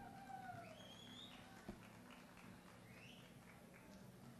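Near silence: a faint steady low hum, with a few faint, wavering high sounds in the background.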